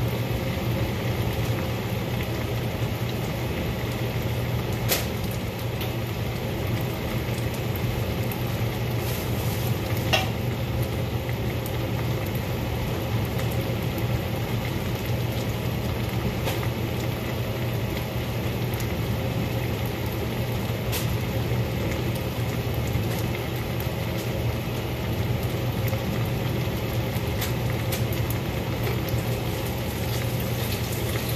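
Vegetables frying in a sauté pan over a gas flame: a steady sizzle over a low hum, with a few sharp pops.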